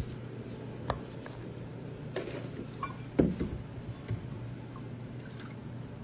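Silicone spatula scraping and pressing thick icing into a bowl: soft wet squishes and a few light knocks against the bowl, the loudest about three seconds in, over a steady low hum.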